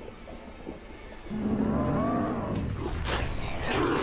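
A deep, monstrous growling roar, the voice of a demon, starts about a second in and arcs up and down in pitch. A second snarl follows near the end.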